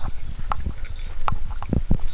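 Footsteps of a person walking on a dirt forest trail: irregular soft thuds about twice a second, over a low rumble of handheld-camera handling noise.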